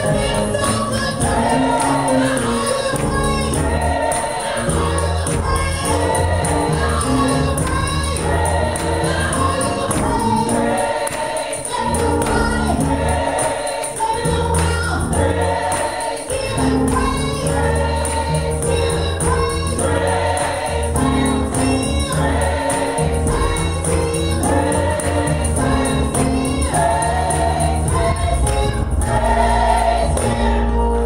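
Gospel praise team of several singers singing together with keyboard accompaniment and a tambourine.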